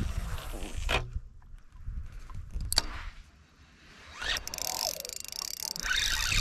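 Fishing reel being cranked: a rapid, fine whirring of the reel's gears from about four seconds in, after a single sharp click a little before the middle.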